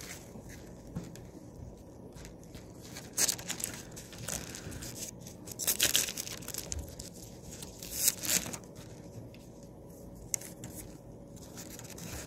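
Thin Bible pages rustling as they are leafed through to find a passage, with several short bursts of page-turning.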